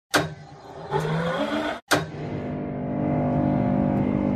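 Title-card intro sound effects: a sharp hit, a short rising whine about a second in, an abrupt cut and a second hit, then a steady held sound of several stacked tones with a car-engine-like character.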